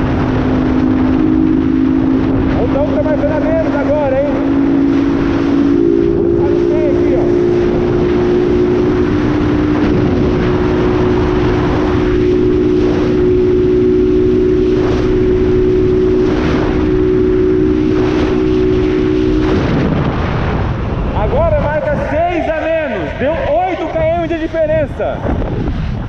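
A Honda 160 cc single-cylinder motorcycle engine runs at a steady highway cruising speed under a constant rush of wind. Its note steps up slightly about six seconds in and drops away about twenty seconds in, when talking takes over.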